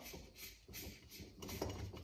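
Faint handling sounds, with a few light ticks, as gloved hands unscrew the small bottom drain cap from a carburetor float bowl.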